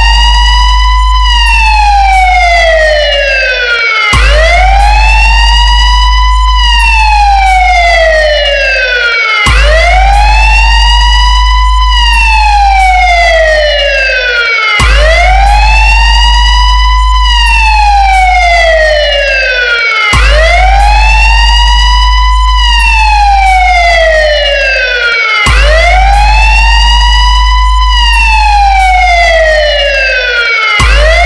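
Siren-like electronic wail over a continuous, very deep bass tone in a DJ competition sound-check track. Each wail rises quickly, then slides slowly down over about four seconds before cutting off and starting again, about every five seconds; the bass drops out for a moment just before each restart.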